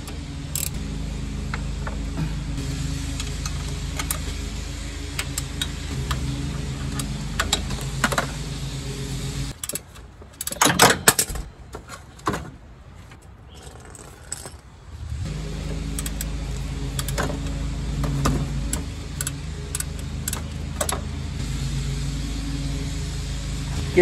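Hand tools working the bolts of a steel power steering reservoir bracket: scattered metallic clicks and clinks from a ratchet and wrench, with a louder flurry of clinks about ten seconds in. A steady low hum runs underneath and drops out for a few seconds in the middle.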